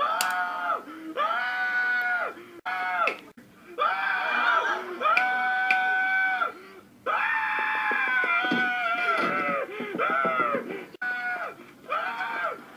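Eric Cartman's high cartoon voice screaming without words: a run of long, drawn-out cries, each held about a second or more, with short breaks between them.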